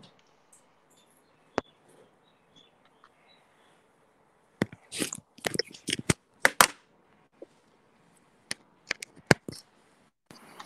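Handling noise from call equipment: one sharp click, then after a few quiet seconds an irregular run of clicks and knocks in the second half.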